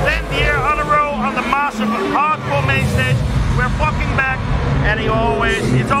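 A man's voice talking close to the microphone over a loud, low background rumble.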